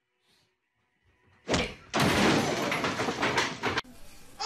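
A sudden thump about a second and a half in, then nearly two seconds of loud, dense noise with no clear pitch that cuts off abruptly.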